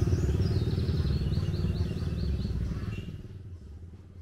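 Small motorcycle engine passing close by and fading away over about three seconds. A quick series of high chirps sounds over it in the first two seconds.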